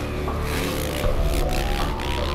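Channel logo intro sting: music with a steady low bass, overlaid with noisy swoosh and scrape effects from about half a second to a second and a half in.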